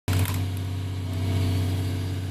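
Diesel engine of a John Deere 250G LC excavator running steadily at work as its grapple lifts wooden access mats, with a short clatter right at the start.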